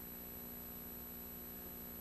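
Steady electrical mains hum with a faint high-pitched whine; nothing else sounds.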